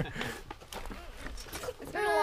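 A woman laughing briefly, followed by faint voices in the background over a low rumble.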